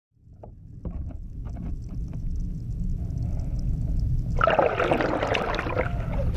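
Muffled water sloshing and bubbling, with a few small knocks, then a louder burst of splashing and bubbling from about four and a half seconds in as a duck dives into the pool.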